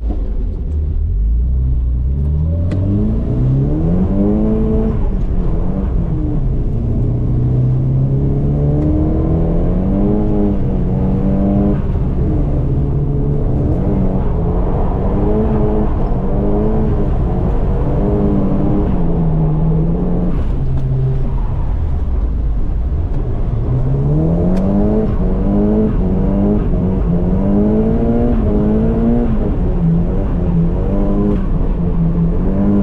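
Nissan Silvia S15's engine heard from inside the cabin, revving up and down over and over as the car is driven around the track. The pitch climbs from low revs about a second in, then rises and falls every few seconds.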